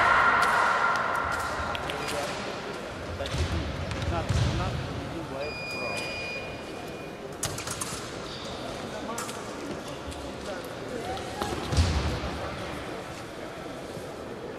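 A loud steady electronic tone fades over the first second or two in an echoing hall, with a shout over it. It is the scoring machine signalling the touch that ends the sabre bout. After it come thuds, footsteps and clicks on the wooden floor, and a short beep about five and a half seconds in.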